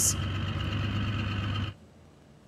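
Motorboat engine running steadily with a constant hum, cut off abruptly about three-quarters of the way through.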